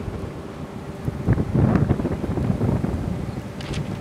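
Storm wind buffeting the microphone: a low, uneven noise that grows gustier after the first second, with a few small clicks near the end.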